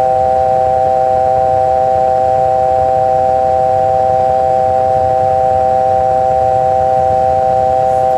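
Airbus A320 simulator cockpit aural alert: a loud, steady electronic chord of several pitches held without a break.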